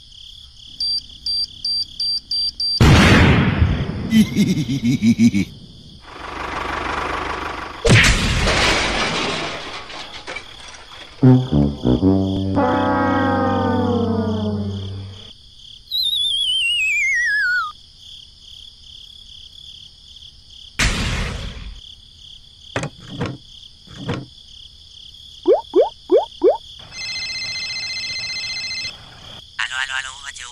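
A string of cartoon sound effects over a steady high chirping insect-like background. It includes short pulsed tones, two loud noisy bursts, a wobbling descending tone, a long falling whistle, a sharp crash, a few quick glides and a steady electronic tone near the end.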